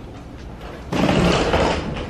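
Hard-shell rolling suitcase wheeled over an elevator door threshold: a sudden noisy rattle of the wheels on the metal threshold about a second in, lasting about a second and fading.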